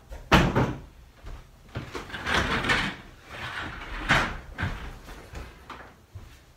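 Furniture and boxes being moved about a room: a sharp knock early on, a stretch of scraping and rustling about two seconds in, and another knock a little after four seconds.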